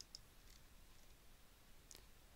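Near silence: room tone, with two faint short clicks at the start and another just before the end.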